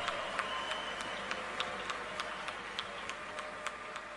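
Scattered hand claps over a steady noisy background, fading slowly.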